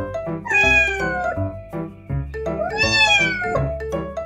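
A cat meowing twice, two long calls: the first about half a second in sliding down in pitch, the second just past the middle rising and then falling. Light background music with a bouncy plucked rhythm plays under the calls.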